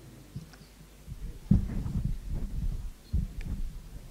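Handheld microphone being picked up and handled: a run of dull, irregular thumps and rubbing through the PA, the loudest about one and a half seconds in, with a second group near the end.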